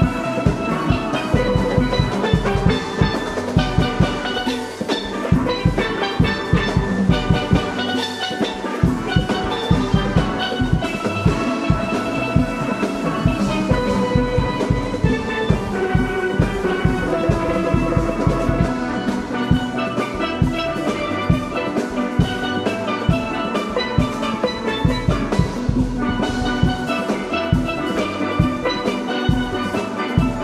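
A steel orchestra playing live: many steel pans ringing out fast pitched notes in harmony over a steady, regular beat of drums and bass pans.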